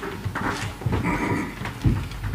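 Scattered knocks and shuffling movement noises in a room, with a heavier thump near the end.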